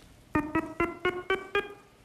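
A run of short electronic beeps at one steady pitch, about four a second, starting about a third of a second in. It is the game-show sound effect that plays as the light-up floor grid flashes the path to be memorised.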